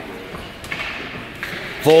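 Hockey rink ambience: a low murmur of voices and a few light knocks of sticks and puck on the ice, with the echo of a large arena. A man's voice starts loudly near the end.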